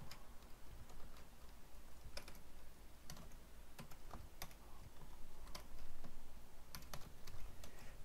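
Typing on a computer keyboard: irregular, fairly quiet key clicks, some in quick runs and some spaced out.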